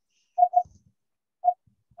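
Three short chirps of one steady, fairly high pitch in a pause between speech, two in quick succession and a third about a second later.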